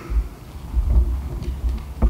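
Microphone handling noise: irregular low thumps and rumbles as the microphone is moved about, with a few light knocks.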